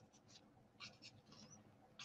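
Faint scratching of a Stampin' Blends alcohol marker tip stroking across cardstock, several short strokes in a row.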